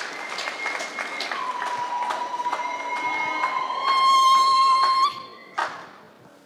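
A congregation clapping, with a steady high-pitched tone sounding over the applause; the tone swells to become the loudest sound near the end, then cuts off suddenly.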